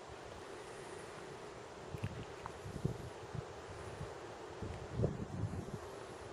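Wind on the microphone: a faint, steady hiss with irregular low buffeting thumps from about two seconds in, the strongest near the end.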